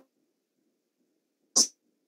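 A brief breathy sound from a person's voice, about one and a half seconds in, over a video-call line.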